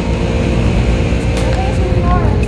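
Steady low rumble of wind buffeting a handheld phone's microphone, with a faint voice briefly near the end.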